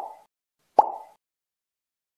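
Two short cartoon 'pop' sound effects a little under a second apart, each a sharp pop that dies away quickly, matching an animation of popcorn kernels bursting.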